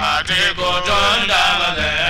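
Hausa praise song: voices chanting a bending, ornamented melody over a low drum pulse.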